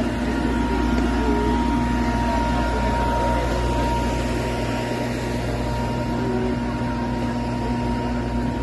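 Electric blower fan running with a steady hum, two held tones over a low rumble.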